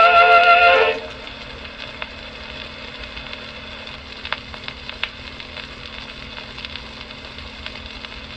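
An Edison Amberola 30 phonograph plays a 1918 Edison Blue Amberol cylinder of a vocal quartet. Its last held, wavering chord ends about a second in. The reproducer then runs on past the music with steady surface hiss, a few crackles and sharp ticks, and a low steady hum.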